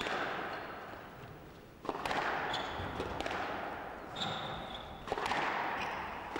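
Squash rally: the ball is struck by rackets and smacks off the court walls several times, each hit ringing in the hall, with short high squeaks of shoes on the court floor.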